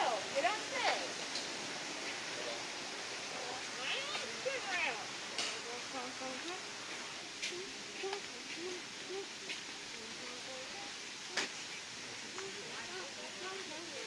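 Indistinct voices in the background, with a few high gliding calls about four seconds in and a handful of sharp clicks.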